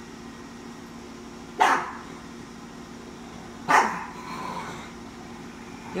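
A dog barks twice, short sharp barks about two seconds apart.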